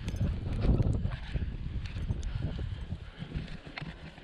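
Close-up scuffle of a horse being caught: low rumbling and thumping from a jostled camera knocking and rubbing against the horse's coat, with scattered knocks and hoof steps. It is loudest in the first second and eases off.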